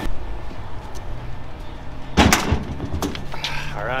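A single loud thump or slam about two seconds in, over a low steady hum.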